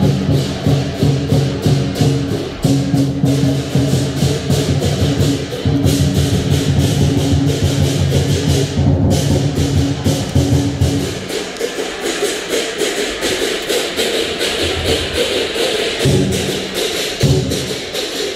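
Lion dance drum and cymbals playing a fast, even beat of rapid strokes. The deep drum drops out for a few seconds past the middle and comes back near the end, while the cymbals keep going.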